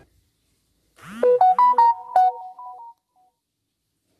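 A short electronic jingle of bright beeping tones, like a ringtone, starting about a second in with a quick rising sweep and stopping about two seconds later.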